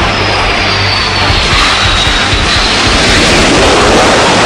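Jet aircraft engine noise with a high whine that falls in pitch over about two seconds, as of a jet passing, mixed with loud hard rock music.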